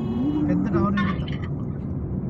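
Steady low road and engine noise inside a moving car's cabin, with a voice talking over it in the first second or so.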